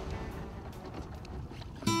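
Low, steady rush of a boat under way on open water, under faint background music that fades away. Acoustic guitar music starts suddenly just before the end.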